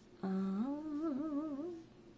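A woman's voice humming: a drawn-out "uhh" held on one note for about half a second, then rising and wavering up and down for about a second more before it stops.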